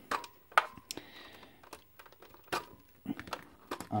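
Scattered light clicks and knocks of plastic connectors and casing being handled as the leads, including a yellow RCA composite plug, are pulled out of a small portable CRT TV.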